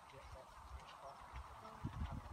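Faint outdoor ambience: a few distant bird calls over a steady hiss, with low thumps from a hand-held microphone being moved, growing stronger near the end.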